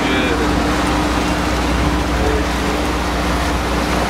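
Sportfishing boat's engines running steadily underway, a constant drone with a steady hum, over wind and water noise.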